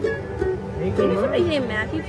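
Mandolin and acoustic guitar picked loosely between tunes, with people's voices talking over the plucked notes.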